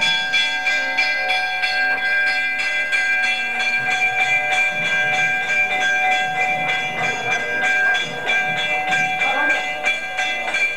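Temple bells ringing rapidly and continuously, their quick regular strokes blending into a steady, many-toned ringing.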